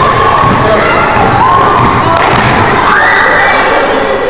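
Spectators in a gym cheering and shouting over one another during a basketball game, several high voices among them. About three seconds in, one voice rises into a long, high yell.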